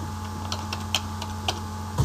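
Computer keyboard keys being typed: about five separate keystrokes spread over two seconds, over a steady low hum.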